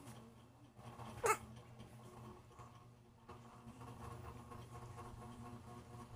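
A newborn baby's short, high squeak about a second in, falling steeply in pitch, after a faint low grunt at the start.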